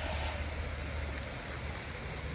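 Steady rushing of water from a small rocky waterfall, an even hiss with no distinct events.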